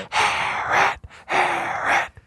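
A man laughing breathlessly: two long, wheezing gasps of laughter with almost no voice in them, separated by a short break.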